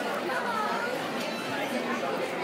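Indistinct chatter of many people talking at once in a restaurant dining room, running steadily throughout.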